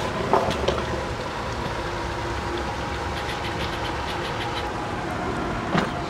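Steady background noise with a low rumble and a few faint clicks.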